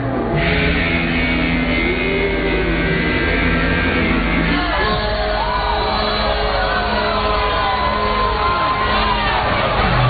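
Loud live rap concert audio in a large hall: music with sustained low notes that change a little before halfway, and crowd voices shouting and singing over it.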